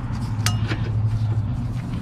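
A steel combination wrench clinks once, sharply and with a short ring, against a rear brake caliper bracket bolt as it is fitted, followed by a few lighter metal ticks, over a steady low hum.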